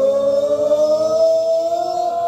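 Live rock band with electric guitars, right after the count-in: one long held note, with overtones, that slides slowly upward in pitch.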